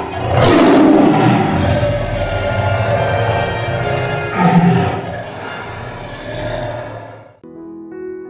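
Tiger roaring twice, first about half a second in and again about four and a half seconds in, over intro music. It fades out shortly before the end, where soft piano music begins.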